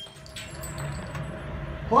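Low, murmuring background noise after a string of pistol shots, with a couple of faint clicks. A man's voice starts at the very end.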